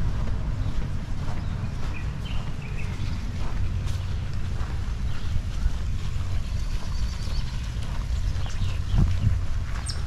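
Wind buffeting the camera microphone as a steady low rumble, with a few faint bird chirps above it.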